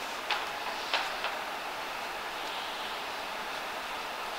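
Steady background hiss of the room, with three faint clicks in the first second and a half.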